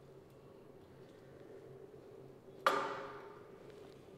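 One sharp metallic clank from a pec deck chest fly machine about two-thirds of the way in, ringing out and fading over about a second, over a faint steady hum.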